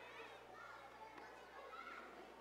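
Faint background chatter of several voices, children among them, with no clear words.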